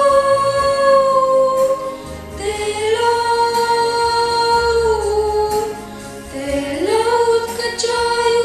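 Two boys singing a Christian song together into microphones, in long held notes, with a short break about two seconds in and a rise to a higher note near the end.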